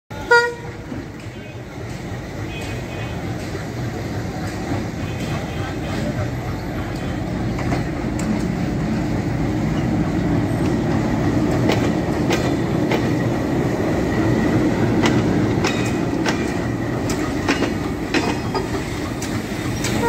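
A short train horn toot at the very start, then the rumble of a WDM-3D diesel-electric locomotive growing louder as it passes close by hauling box wagons, loudest around the middle. Near the end, the wagon wheels clicking over rail joints.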